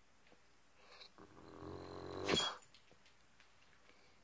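A dog's low, drawn-out groaning vocalisation that builds in loudness for about a second. It ends in a sharp burst of breath through the nose.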